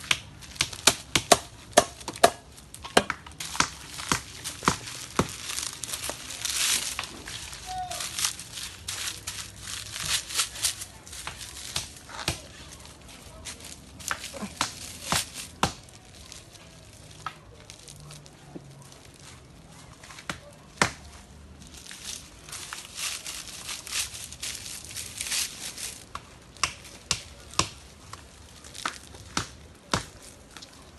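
Dry broom straw crackling and rustling as a bundle is handled and bound onto a wooden broom stick, with many sharp clicks and snaps and stretches of denser rustling.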